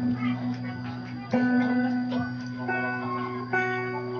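Instrumental background music: plucked-string notes ringing over a steady low drone, with new notes struck about a second in and twice more near the end.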